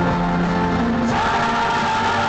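Live pop music played loud over a stadium PA, with many voices singing, heard from within the standing crowd.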